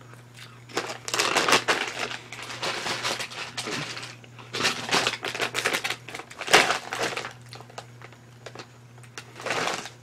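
Potato chips crunching as they are chewed, in irregular crackly bursts, with a foil chip bag crinkling as it is handled partway through.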